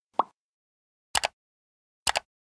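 Animated subscribe-button sound effects: a short pop, then a quick double mouse click about a second later.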